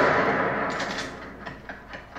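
A loud bang or crash that began just before, dying away with a reverberant tail over about a second and a half, followed by a few fainter knocks.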